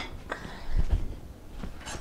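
A faint click, then a few soft, low knocks about a second in: a plate and a kitchen cabinet being handled as a plate is taken out.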